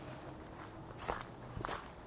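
Footsteps walking through overgrown grass and weeds, a couple of soft steps in the second half.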